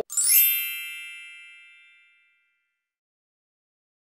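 A single bright chime struck once, rich in high ringing tones, that fades away over about two seconds: an end-of-video sound effect over the black screen.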